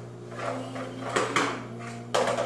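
Plastic baby walker knocking and rattling, with a few short knocks a little past the middle, over a steady low hum.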